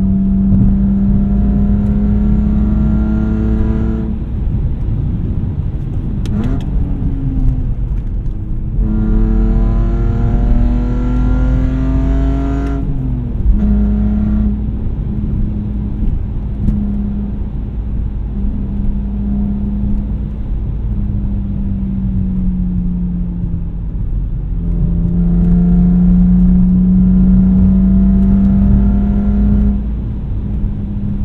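Exhaust of a BMW E46 330xi's straight-six, with a muffler delete and aftermarket headers, heard from inside the cabin while driving. Its pitch climbs under acceleration about a third of the way in, drops off, and then holds steady at a cruise. It grows louder again near the end.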